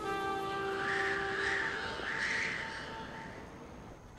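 Held music notes fading out, with three harsh crow caws about a second in. The caws are the stock crow-caw sound effect used to mark an awkward silence.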